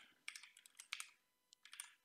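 Faint computer keyboard keystrokes during code editing: a quick run of clicks in the first second and a few more near the end.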